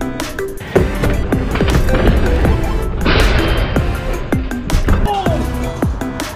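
Electronic background music with a steady beat. About halfway through there is a short burst of noise.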